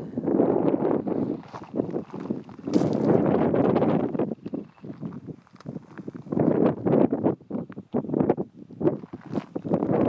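Wind buffeting the camera microphone in uneven gusts, a rough low rumble that swells and drops every second or so.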